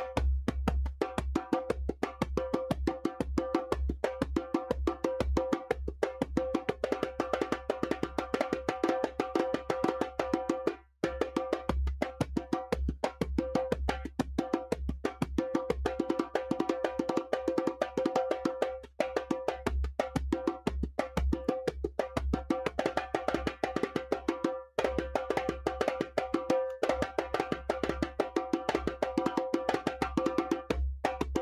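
A drum played in a fast, continuous rhythm of dense strikes with a ringing pitch, broken by a few brief pauses.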